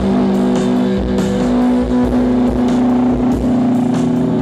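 Rock band playing live, heard from the crowd: long held, distorted electric guitar notes over a low drone, with light drum and cymbal hits. One held note wavers near the end.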